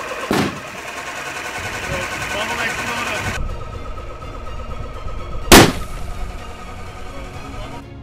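A single loud, sharp bang about five and a half seconds in, with a short ringing tail: a PET soda bottle used as an air tank bursting at around 150 psi. Steady background noise and music run beneath it.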